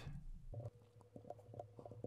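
Faint, quick clicks, about ten at irregular spacing over a second and a half, as a sum (14 ÷ 343) is entered into an on-screen calculator on a computer. A faint steady tone sits underneath.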